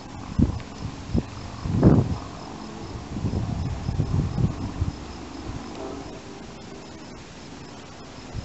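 A cricket chirping in a steady, even pulse, with low bumps and rustling from the camera being handled, the loudest bump about two seconds in.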